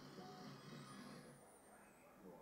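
Near silence: a faint film soundtrack from projected movie clips, with a thin high whistle partway through.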